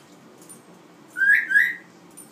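African grey parrot whistling two short, loud notes, each gliding slightly upward, about a second in.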